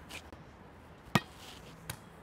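A volleyball struck once with the hands, a sharp slap about a second in, then a lighter knock near the end as the ball comes down.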